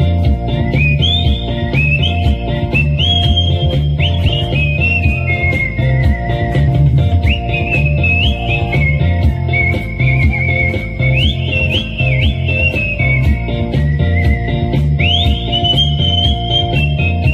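Human whistling, amplified through a microphone and stage speakers, carrying a melody whose notes often slide up into pitch, over a backing track with a steady bass and drum beat.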